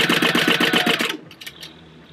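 Sewing machine stitching at a quick, even rate, its needle strokes forming a fast regular rhythm over the motor hum, then stopping about a second in. It is sewing a rectangle of straight stitches through layered cotton panels.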